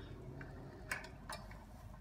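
Two light metallic clicks a little under half a second apart, from the snare wire and snap hook on the beaver trap's eye bolt being let go and swinging.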